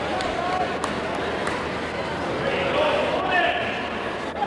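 Indistinct crowd chatter echoing in a gymnasium: many overlapping voices with no single clear speaker, and a few faint knocks.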